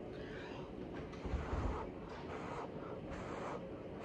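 Several short, faint breathy puffs of air blown by mouth across wet acrylic paint to spread it out, with a brief low rumble about a second and a half in.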